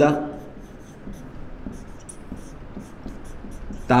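Whiteboard marker writing on a whiteboard: a run of short, irregular scratchy strokes, with a brief high squeak about two seconds in.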